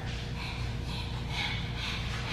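A woman imitating a dog with short breathy huffs, about two a second.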